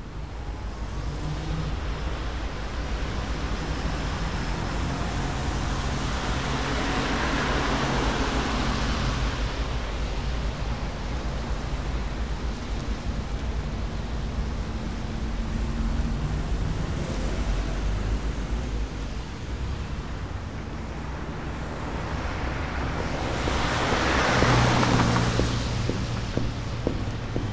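Road traffic ambience: a steady low rumble with hiss, swelling twice as vehicles seem to pass, about seven seconds in and again near the end.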